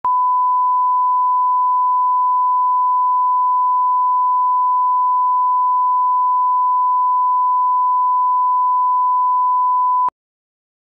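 Steady 1 kHz line-up test tone, the reference tone laid with colour bars at the head of a video tape, held at one pitch and cut off suddenly at the end.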